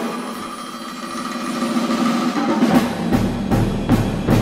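Symphony orchestra playing a dense, percussion-heavy passage that grows louder. A deep low register comes in about three seconds in, followed by sharp accented strikes near the end.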